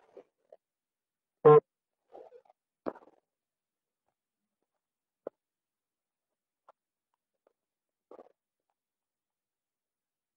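A young man's short wordless vocal sound, like a brief "hm", about one and a half seconds in. It is followed by a few faint clicks and soft mouth noises, with dead silence between them.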